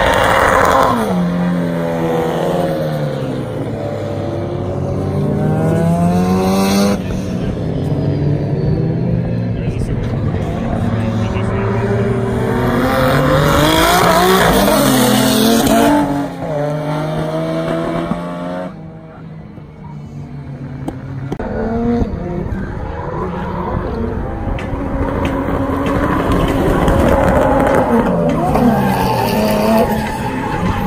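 Drift cars' engines revving in repeated rising and falling sweeps as the cars slide sideways in tandem, with tyres screeching under the engine noise. The sound drops away briefly about two-thirds of the way through, then the revving picks up again.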